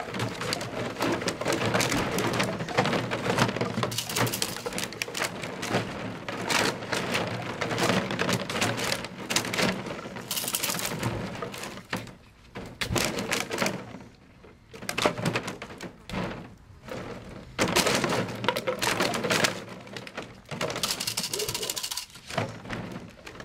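Empty plastic water bottles crackling and clattering in a plastic kiddie pool as a puppy scrambles through them, in dense bursts with two short quieter lulls past the middle.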